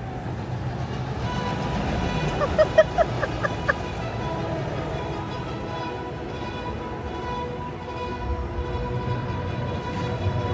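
Music playing from a spinning chair-swing ride over a steady low hum, with a run of short, loud pitched notes between about two and a half and four seconds in.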